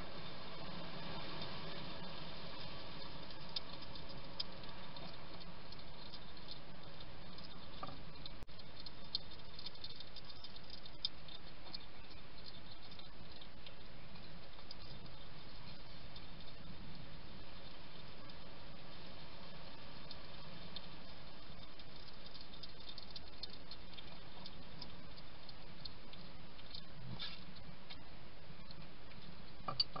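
Wild hedgehog eating dry food pellets from a ceramic dish: a steady run of small crunches and clicks as it chews and noses the food, over a constant background hiss.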